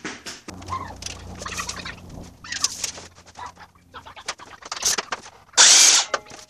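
Scattered clicks and knocks of boards and tools being handled, with a low hum in the first couple of seconds, then near the end a sudden loud burst from a DeWalt sliding compound miter saw starting up.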